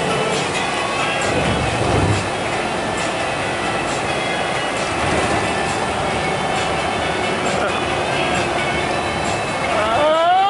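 Steady road and engine noise inside the cabin of a moving coach bus, with faint voices in the background.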